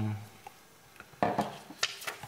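Objects handled on a work table: a short clatter about a second in and a light click near the end, as the plastic syringe of solder paste is set down.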